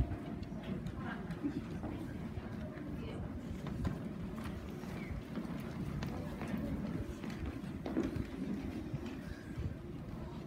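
Footsteps of several people walking across a hardwood stage floor, a patter of irregular knocks.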